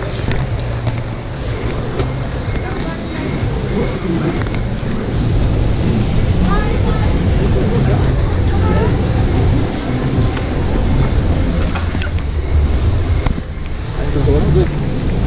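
Steady low rumble of water churning in a river-rapids ride's loading channel as circular rafts float through, with faint indistinct voices in the middle.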